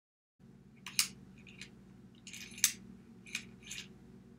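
Plastic gearbox housing of a dishwasher diverter motor being pried open with a small tool: a run of sharp plastic clicks and snaps, the loudest about a second in and a little past halfway, over a low steady hum.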